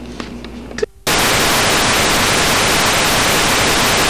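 Faint room tone with a click as the recording ends, then, about a second in, a sudden switch to loud, steady static hiss from blank analog video snow.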